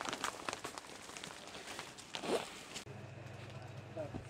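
Faint rustling and light clicks of packaged garments being handled, with one brief louder swish a little after two seconds in. A low steady hum comes in near the end.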